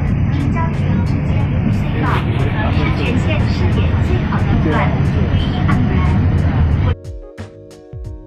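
Alishan Forest Railway train running, a steady low rumble heard from inside the carriage with voices over it. About seven seconds in it cuts off abruptly into background music.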